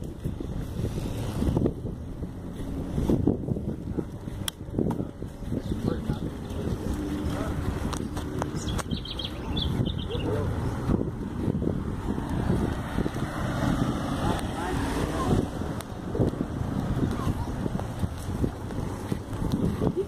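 Wind buffeting the microphone of a camera riding on a moving bicycle: a steady low rumble that rises and falls with the airflow.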